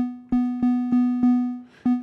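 Critter & Guitari 201 Pocket Piano synth sounding a single B3 note, about 248 Hz, repeated roughly three times a second. The decay knob is being turned up, so each note rings on a little longer than the one before.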